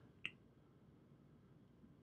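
Near silence: room tone, with one faint short click about a quarter second in.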